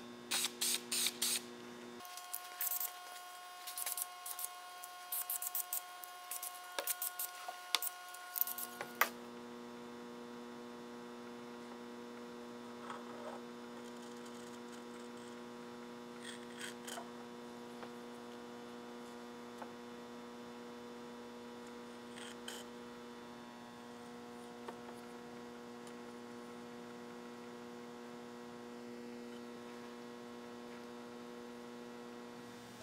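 Steady mains hum, with scattered light clicks and taps of a steel cutter and calipers being handled, most of them in the first nine seconds.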